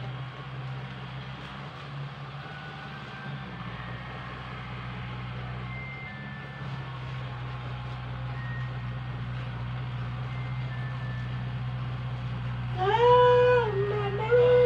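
Farm tractor engine running steadily while tilling a field: a low, even hum. Near the end, a loud drawn-out animal call rises and then falls in pitch over about a second.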